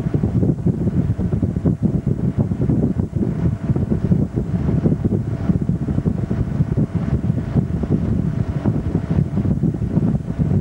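Wind buffeting the microphone over the steady drone of the tow boat's engine running at towing speed, with the rush of the water and wake.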